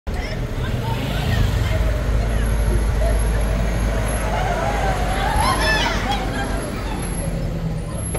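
Mercedes-Benz Sprinter diesel van engine running low as it moves slowly past close by, easing off near the end, with people talking in a crowd around it.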